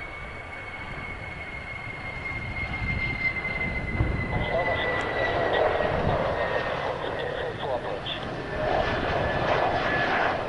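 Mitsubishi F-2 fighter's jet engine running as the jet rolls along the runway after landing. A high whine slowly falls in pitch over a broad rushing noise that grows louder about halfway through.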